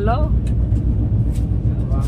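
Moving passenger train heard from inside the coach: a steady low rumble with constant rattling.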